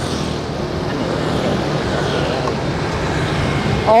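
Steady rumble of a moving motorbike, its engine and wind and road noise blending into one even sound while riding through light traffic.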